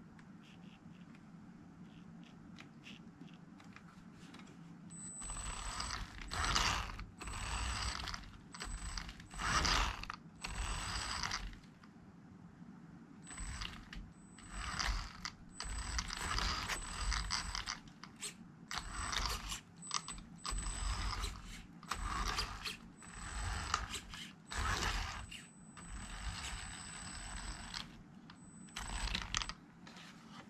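WLtoys 12428 RC car driven in repeated short bursts of throttle by a drill motor fitted in place of its own: motor and gear drivetrain whirring with a thin high whine. The bursts start about five seconds in and last about half a second to a second and a half each.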